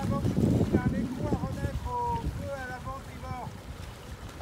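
Small outboard motor running on a dinghy lashed alongside a wooden yawl, towing it through the water: an uneven low rumble, strongest in the first second.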